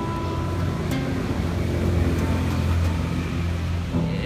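Acoustic guitar playing softly between sung lines, over a steady low rumble that swells in the middle.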